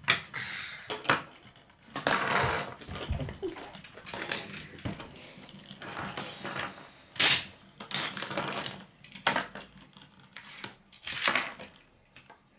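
Metal Beyblade spinning tops spinning and clattering in a shallow tray: irregular sharp clicks and knocks as they strike each other and the tray wall, with short scraping spells in between. The loudest click comes about seven seconds in.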